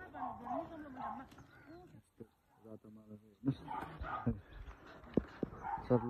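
A dog whining in several pitched, wavering calls: a long one at the start whose pitch rises and falls, then shorter calls after a brief pause.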